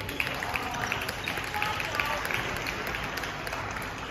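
Badminton hall ambience: a steady background murmur of voices with short squeaks of sports shoes on the wooden court floor, about three a second.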